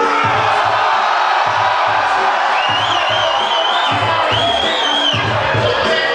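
Hip hop backing beat with a steady bass kick, under a crowd cheering and shouting; a warbling high whistle-like tone rises over it twice in the middle.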